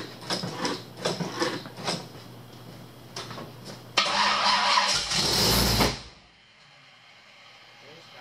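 A carbureted engine with a freshly installed camshaft, its pedal pumped beforehand, is cranked and catches with a loud burst about halfway through. It runs for about two seconds and then dies suddenly, a start that will not keep running. Light clicks and rattles come before it.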